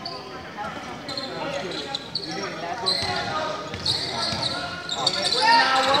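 A basketball bouncing on an indoor court amid indistinct shouts from players and spectators, echoing in a large hall.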